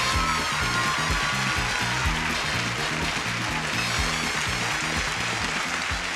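Upbeat game-show theme music with a steady beat and bass line, played over a studio audience cheering and applauding.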